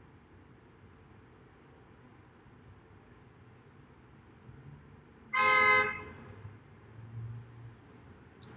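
A single short, loud toot of a steady horn-like tone, lasting about half a second, about five seconds in, over otherwise quiet room tone.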